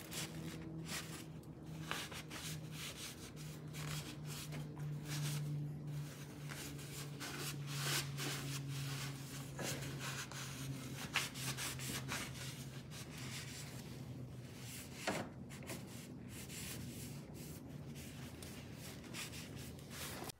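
A paper shop towel rubbing and wiping over the metal frame of a truck's underside in irregular scrubbing strokes, over a low steady hum.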